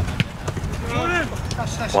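Wind rumbling on the microphone, with a single sharp thud of the soccer ball being struck shortly in and a player's shout about a second in.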